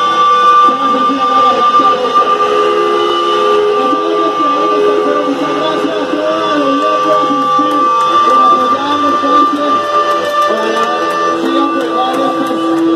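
Electric bass and guitar notes played loosely through amplifiers before a song, under a steady high-pitched ringing tone, with people talking.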